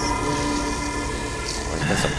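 Film soundtrack holding a sustained horn-like chord of several steady tones over a low rumble.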